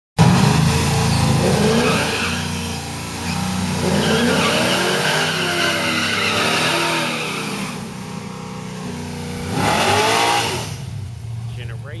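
Street-race cars' engines revving repeatedly, the pitch rising and falling about once a second, then a hard rising rev about ten seconds in as a car launches and pulls away, dropping off near the end.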